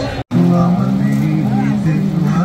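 A sound cuts out abruptly for a moment. Then a low male voice comes in, chanting in long held notes that step from pitch to pitch.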